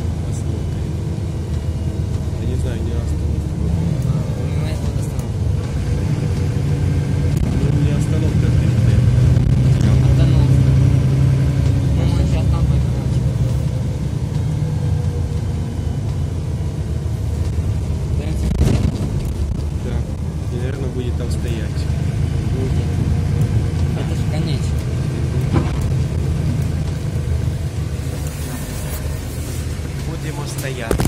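Inside a Mercedes-Benz O530 Citaro city bus on the move: the engine and drivetrain drone over road rumble. The drone grows louder for a few seconds around ten seconds in, then eases off, with a single sharp knock a little past halfway.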